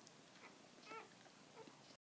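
Faint, high squeak from a week-old nursing puppy about a second in, with a couple of fainter squeaks around it.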